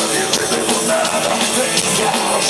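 Live rock band playing loud, electric guitar over a driving drum kit, heard through the PA from the audience in a stadium.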